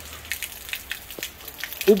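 A steady stream of rainwater pouring from a roof pipe outlet and splashing, with rain falling.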